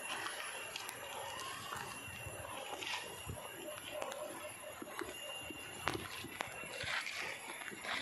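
Faint voices and scattered light clicks and rustles, likely footsteps and handling on a leaf-litter forest trail, over a steady background hiss.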